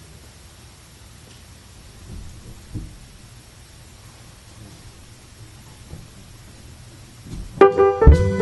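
Quiet room tone on a concert stage with a few faint knocks. Near the end the jazz combo comes in suddenly and loudly on the next tune, with the piano to the fore.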